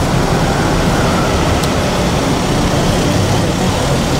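Car engine running and tyres rolling as a white BMW SUV moves slowly past close by, in a steady loud noise with no clear beat or pitch.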